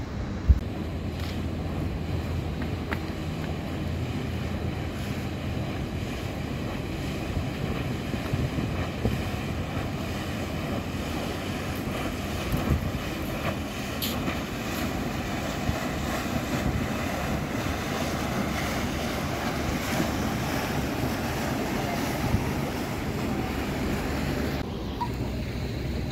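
Wind buffeting the microphone over a steady outdoor rush. A low engine hum runs through the first several seconds, and a single sharp knock comes about half a second in. Later a river boat taxi passes and its wake churns the water.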